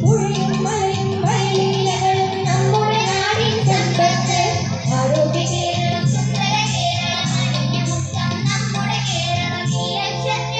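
Choir of girls singing a song together into microphones through a PA, over instrumental accompaniment with a steady rhythm.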